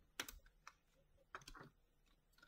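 Near silence broken by a few faint, scattered clicks and taps of tarot cards being handled on a tabletop.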